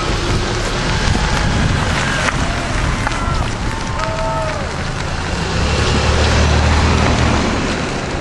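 A Honda CR-V and another SUV driving past close by: steady tyre and engine noise on the road, with a low rumble swelling about six seconds in.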